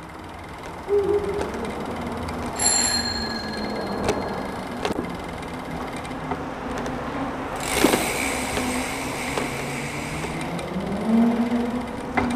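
Steady rumble of passing road traffic with slowly gliding engine and tyre tones, and a single short metallic ring about two and a half seconds in.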